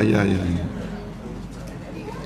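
A man's low-pitched, drawn-out "ya, ya" for the first half-second or so, then a quieter stretch of room sound.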